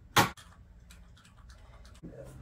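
A Mount-It MI-15007 standing desk converter being lowered by hand: one sharp clack just after the start, then faint scattered ticks.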